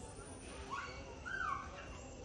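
Macaque calling: two short, high calls about half a second apart, the second one louder, bending up and then down in pitch.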